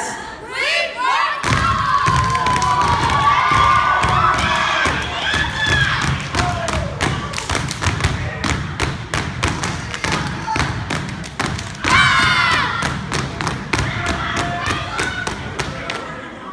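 Step team stepping: boots stomping on a wooden stage and hands clapping in a fast, driving rhythm that starts about a second in, with an audience cheering and shouting over it.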